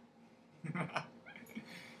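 A faint animal call, twice in quick succession.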